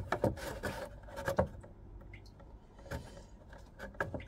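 Scattered light clicks, knocks and rubbing as a tray on a homemade opal-cutting rig is handled and shifted into place; the rotary tool is not running.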